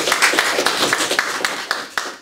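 Audience applauding: many hands clapping together, thinning out near the end.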